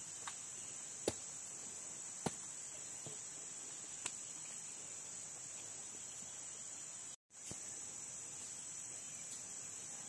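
Steady, high-pitched chorus of forest insects, with a few sharp clicks in the first half.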